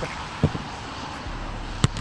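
A football being kicked on an artificial pitch: a soft low thud about half a second in, then a sharp, loud strike of the ball near the end, over steady outdoor background noise.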